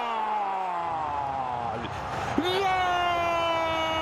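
A man's long drawn-out "gol" cry, a football commentator's goal call: one long shout sliding down in pitch, a short breath just before the halfway point, then a second long cry held on one note.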